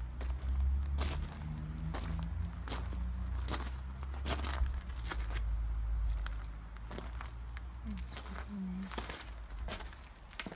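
Footsteps on gravel and paving, many irregular steps, over a low rumble that is strongest in the first six seconds.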